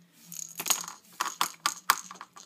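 Plastic baby rattle shaken, giving a run of sharp rattling clicks that grow louder in the second half.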